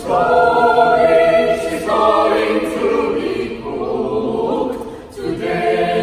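Mixed a cappella choir of men's and women's voices singing sustained chords in harmony. One phrase dies away shortly before five seconds in, and a new one starts strongly right after.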